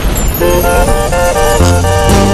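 Song intro: a rushing noise gives way about half a second in to a quick run of short horn notes, with a deep bass note coming in near the end.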